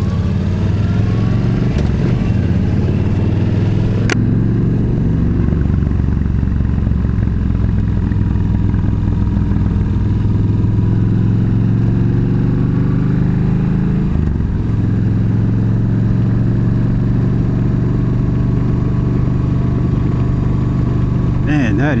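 Yamaha V-Star 1300's V-twin engine running steadily under way, heard from the rider's seat. A brief dip in the engine note comes about two-thirds of the way through, and a single sharp click about four seconds in.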